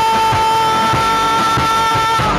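Live rock band with electric guitars, bass and drums playing, one long high note held steady over the drums.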